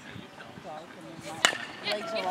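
A single sharp crack of a bat hitting a baseball about one and a half seconds in, over faint voices from the field.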